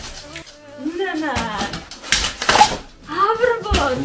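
Polystyrene packing and cardboard box rustling and scraping as a hoverboard is unpacked by hand, loudest a little past the middle. Two drawn-out excited wordless exclamations with rising and falling pitch come about a second in and near the end.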